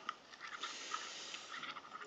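A spoon stirring hot cereal mix in a four-cup container: faint scraping with a few light clicks.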